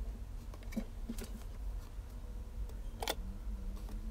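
Faint handling sounds: a few light clicks and taps as a glass-backed phone and a small camera lens bezel are handled, the clearest about three seconds in, over a steady low hum.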